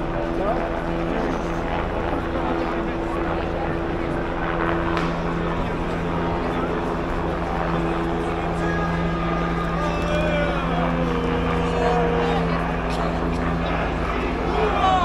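A steady engine drone keeps up under the voices and shouts of a large crowd, with more shouting in the second half.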